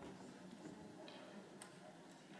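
Near silence: faint room tone with a few soft clicks, the clearest about one and a half seconds in.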